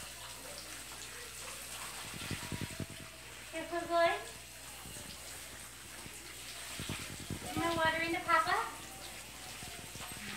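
Garden hose spraying water onto a dog and the wet patio, a steady hiss with some splashing. Twice a dog gives a short, wavering vocal call, about four seconds in and again near eight seconds.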